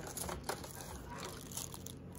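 Soft crinkling of a clear plastic bag and light rustling in a cardboard box as a small bagged accessory is lifted out.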